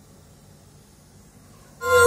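Faint room hum, then about 1.8 seconds in, loud music starts playing through a pair of KEF C30 bookshelf loudspeakers during a sound test, opening with long held notes over a steady bass.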